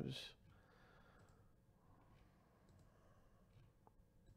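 Near silence with a few faint computer-mouse clicks, spread through the second half.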